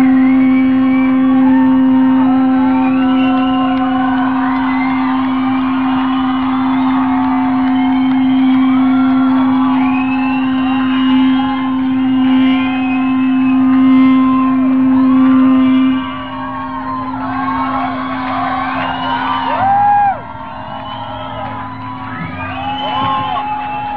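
Live rock band holding a sustained low electric-guitar drone note, with sliding, squealing feedback tones over it, in a muffled audience recording. The drone weakens about 16 seconds in, and the sound drops sharply about 20 seconds in as the song winds down into crowd noise.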